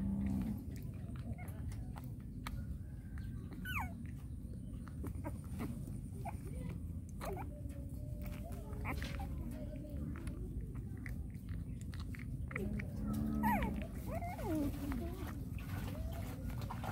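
Newborn puppy suckling from a baby bottle, with steady small wet sucking and smacking clicks. It gives a few short whining calls, the loudest a bit over three-quarters of the way through.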